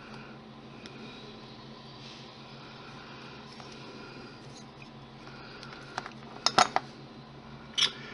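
Quiet handling sounds of hand sculpting with polymer clay: a low steady room hum under a wooden-handled tool smoothing the clay, with a few small sharp clicks about six to seven seconds in and once more just before the end.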